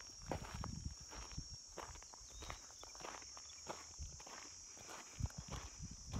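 Faint footsteps crunching on a dirt track, irregular steps about two a second, over a steady high-pitched whine.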